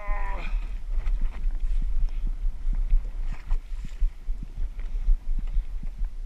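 Boat-deck ambience at sea: a steady low rumble with water washing against the hull and scattered light knocks and clicks.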